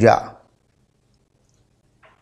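A man's voice finishes a word in the first half second, then near silence: room tone.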